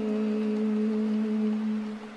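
A male Quran reciter's voice holding one long, steady note on a drawn-out vowel at the close of a phrase, dropping away near the end.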